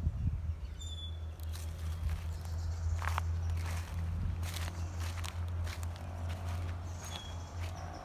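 Footsteps of a person walking over grass and dry leaves, several separate steps, over a steady low rumble.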